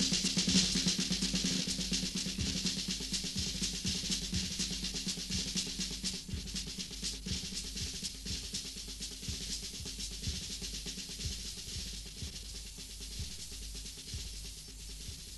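Rock drum kit played softly in a live soundboard recording: regular low drum beats about twice a second with snare and cymbal work, under a lingering held low note, the whole gradually getting quieter.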